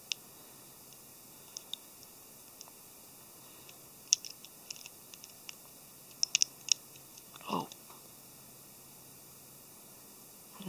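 Small plastic model-kit parts clicking and ticking as they are handled and pressed together by hand: scattered single clicks, a cluster about four seconds in and a quicker run of sharp clicks about six seconds in. A short voice sound falling in pitch comes about seven and a half seconds in.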